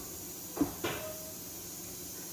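A metal spoon knocks twice lightly, a quarter second apart, against a plastic microwave idli mould while idli batter is spooned into its cups.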